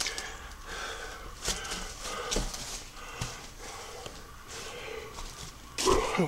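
A person moving about, with footsteps on debris and breathing, and a few light knocks.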